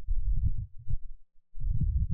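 Low, fluttering rumble on the microphone, dropping out briefly about a second and a half in.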